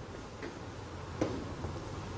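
Quiet room tone with two faint clicks, about half a second and a little over a second in.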